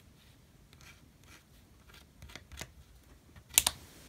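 Light scraping and clicking of a small plastic scraper against a metal nail-stamping plate, ending in two sharp clicks close together about three and a half seconds in.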